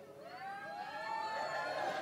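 Several high voices in the audience reacting at once, their calls overlapping in rising-and-falling glides and growing louder.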